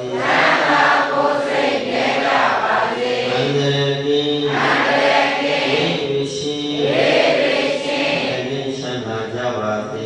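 Buddhist monk chanting into a microphone: a continuous, melodic recitation with long held notes, amplified over a PA.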